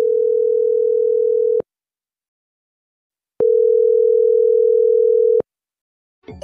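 Telephone ringback tone on an outgoing mobile call: a steady low beep about two seconds long, sounding twice with about two seconds of silence between. The call is ringing at the other end and has not yet been answered.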